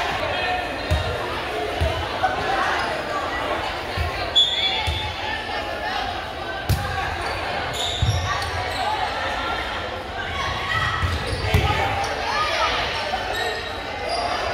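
Volleyball play in a gymnasium: a string of separate sharp thuds of the ball being struck, spread irregularly through the rally, with a steady murmur of voices in the hall.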